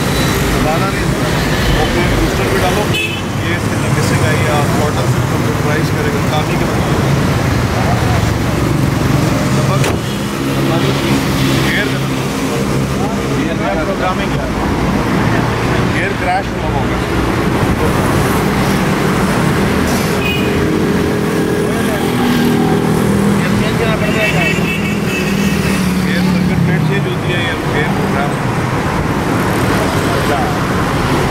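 Steady road traffic passing on a busy street, with men's voices talking over it.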